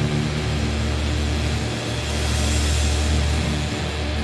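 Stoner/doom metal band playing: heavily distorted electric guitars and bass holding low sustained chords over drums, with cymbals washing in the middle.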